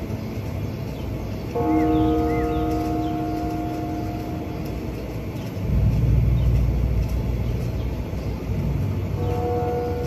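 Wind rumbling on the microphone, swelling to a louder gust about halfway through. A distant steady multi-pitched tone, like a horn, sounds for a few seconds near the start and again briefly near the end, with a couple of faint bird chirps.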